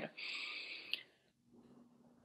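A short breath into a microphone, heard as a soft hiss lasting under a second and ending in a faint click, followed by near silence.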